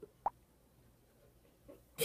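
A single short, sharp pop about a quarter second in, with a faint tick near the end; otherwise near silence.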